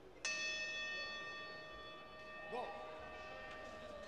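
A single strike of a round bell about a quarter-second in, ringing on with a long, slowly fading tone: the signal that round 2 is starting.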